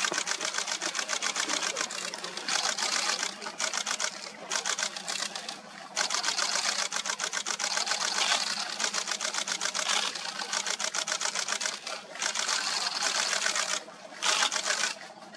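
Camera shutters firing in long rapid bursts, many clicks a second, with a few short pauses between bursts.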